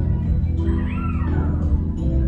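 Waltz music playing over the hall's sound system for ballroom dancing. About half a second in, a high gliding tone rises and falls over roughly a second.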